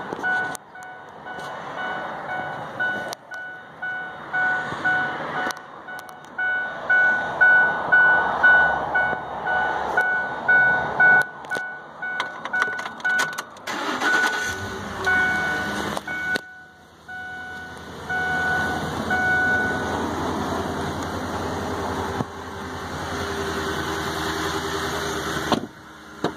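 Ford F-150's warning chime dinging over and over in the cab, with handling and rustling noise. About halfway through the engine is started and then idles steadily, and the chime stops a few seconds after the start.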